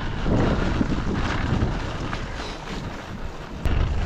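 Wind buffeting the microphone of a bike-mounted camera while riding into a stiff headwind, a steady rushing noise that eases slightly partway through.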